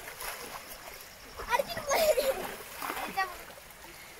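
River water splashing around people bathing, with excited voices calling out about a second and a half in and again near three seconds.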